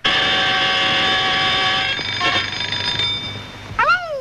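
A loud, steady ringing tone with many overtones, starting suddenly and fading away after about three seconds.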